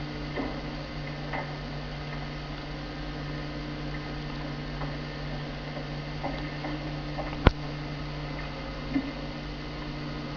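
Steady electrical mains hum with a few faint ticks scattered through it and one sharp click about seven and a half seconds in.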